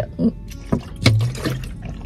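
A person drinking water from a plastic bottle: sips and swallows, with small clicks of the plastic.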